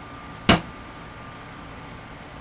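Steady air-conditioner hum with a faint steady whine underneath, broken once about half a second in by a single sharp knock.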